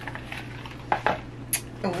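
A few light clicks and clinks of small items being picked up and handled, about a second in and again near the end, over a steady low hum.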